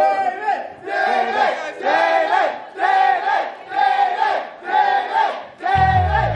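A crowd of people shouting a chant in unison, about one shout a second. Music comes in right at the end.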